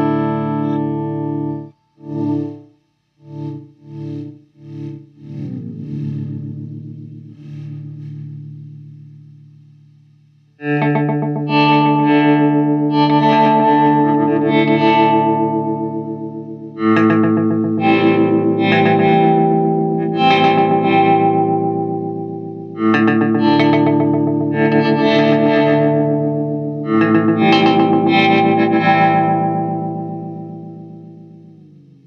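Electric guitar (a Paul Reed Smith CE 24 into a Mesa/Boogie Mark V:25) played through a Hologram Electronics Infinite Jets Resynthesizer pedal, which turns the chords into held, synth-like tones. About two seconds in, the sound is chopped into short stuttering pulses for a few seconds and then dies away. After that, new chords come in every five or six seconds and each is held at an even level before fading.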